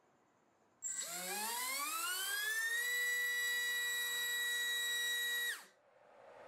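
Small brushless drone motor, a BrotherHobby R5 2306-2450KV, spinning a four-blade 5-inch propeller on a thrust test stand. A high whine starts suddenly about a second in and climbs steadily in pitch as the throttle ramps up. It holds at a steady pitch for a few seconds, then drops away quickly near the end.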